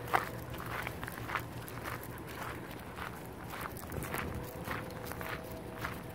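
Footsteps crunching on gravel at a steady walking pace, about two steps a second.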